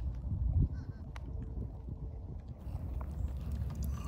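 Low wind rumble buffeting a phone microphone, loudest just over half a second in, with a faint short bird call about a second in.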